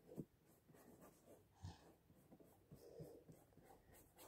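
Near silence with a few faint, short strokes of a paintbrush on paper.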